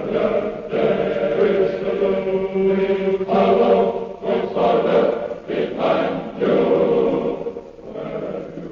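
A choir singing slow, held chords, the notes changing every second or so, quieter near the end.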